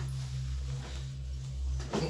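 A low steady hum under faint rustling and shuffling as a man moves up to a table and sits down.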